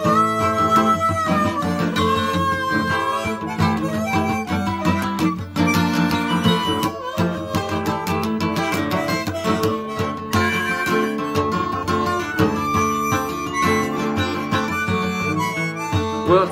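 Blues harmonica solo with held and bent notes, over strummed acoustic guitar.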